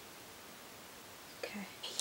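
Steady low hiss of room tone, then a breath and the first soft sounds of a woman's voice near the end as she starts to speak.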